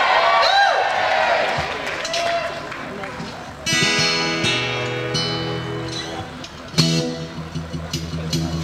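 Voices for the first few seconds, then a strummed acoustic guitar chord about halfway through that rings out and fades, and a second chord struck near the end.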